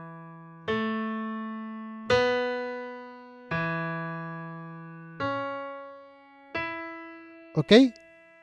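Software piano playing a slow ornament after an A: six separate notes, about one every second and a half, each struck and left to ring and fade.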